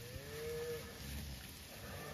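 A calf's single short, faint, high-pitched bawl of under a second, rising slightly then falling away.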